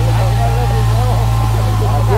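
A vehicle engine idling steadily, a low even hum, under short rising-and-falling calls from a flock of chickens.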